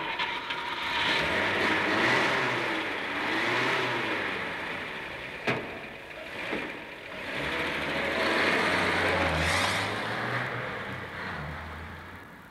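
Sound effect of a Rolls-Royce car engine running and driving off, its pitch rising and falling as it revs. It swells, dips near the middle, swells again and fades toward the end, with one sharp click about five and a half seconds in.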